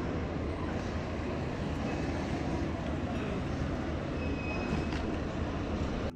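Steady city street ambience: a low traffic rumble with a faint murmur of voices.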